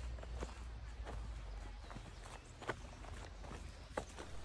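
Footsteps of a person walking on a dirt forest trail, a step every half second to a second, over a steady low rumble.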